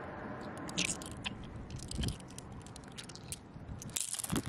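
Gritty crunching and scattered sharp clicks of wet sand being scraped and dug through by hand, over a steady low hiss.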